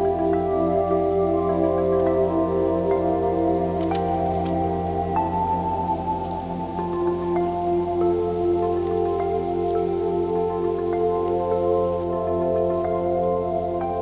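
Slow ambient music of sustained chords that shift every few seconds over a steady low drone, with small scattered crackles of twigs layered in.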